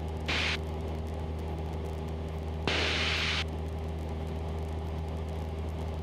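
Cessna 172's engine and propeller running steadily, heard as a low drone with a few steady tones, likely through the headset intercom. Two short bursts of radio hiss break in, one about a third of a second in and a longer one about three seconds in.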